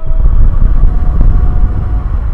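A sudden loud, deep rumbling noise that cuts in abruptly, covers the soft music, and dies away after about three seconds.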